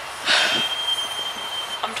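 A short, loud breathy sigh, followed by a thin, steady high-pitched whine in the background.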